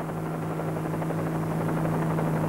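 Steady aircraft drone: a low hum under a rushing wash, growing slightly louder.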